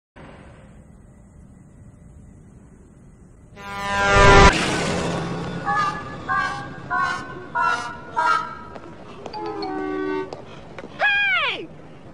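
Comedy soundtrack: a quiet start, then a swell rising in pitch that ends in a sudden loud burst. Short pitched blasts follow, about every half-second, and near the end a single cry falls in pitch.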